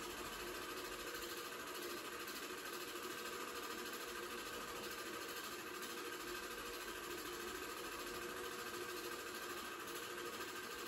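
Home-movie film projector running steadily: a constant mechanical whir with a few steady tones.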